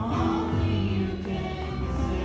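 A group of young voices singing a worship song together, with an electric bass guitar playing low notes underneath.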